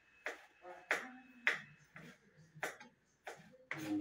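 Kitchen knife chopping tomato on a wooden cutting board: about seven sharp knocks of the blade on the board, roughly two a second.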